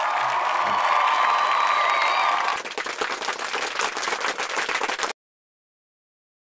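Crowd applause and cheering sound effect. The cheering falls away about two and a half seconds in, leaving clapping that cuts off suddenly about five seconds in.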